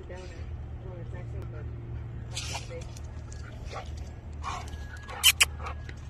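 A dog whines briefly at the start, then short scuffling noises and two sharp clicks close together about five seconds in, over a steady low hum.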